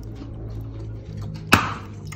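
A single sharp knock, a metal spoon striking the rim of a bowl while dressing is scraped out onto a potato salad, with a steady low hum underneath.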